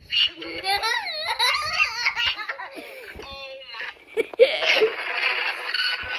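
High-pitched voices talking and laughing, with a wavering, swooping voice in the first half and a breathy burst of laughter in the second.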